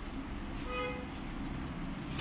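A single short horn-like toot, one steady pitch held for about half a second, a little after the start, over a low steady background noise.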